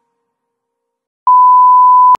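Colour-bar test-tone beep: one loud, steady, unwavering tone that starts a little past halfway and cuts off abruptly.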